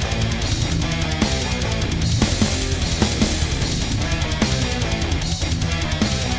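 Heavy metal music: electric guitar and bass riffing over a drum kit playing a dense, driving beat.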